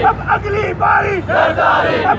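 A crowd of men shouting a political slogan in unison, one loud syllable after another.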